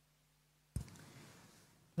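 Near silence with a faint hum, broken about three-quarters of a second in by a sudden click, then faint noise that fades away. The hum stops at the click.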